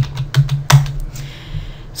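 Keystrokes on a computer keyboard: a handful of sharp clicks in the first second, then a pause.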